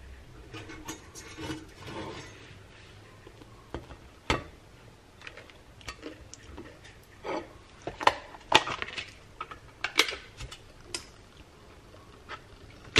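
Scattered light clicks, knocks and clinks of toasted bagel halves and a cream cheese tub being handled on a ceramic plate. The sounds come more often and louder a little past the middle.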